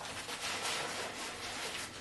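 Steady rustling of a lightweight fabric stuff sack and plastic bag being handled and packed.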